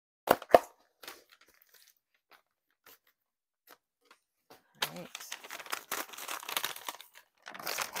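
Paper wrapping being torn and crumpled off a packed item. Two sharp snaps come a quarter-second apart near the start, then a few faint ticks, then about two seconds of continuous tearing and rustling from about five seconds in.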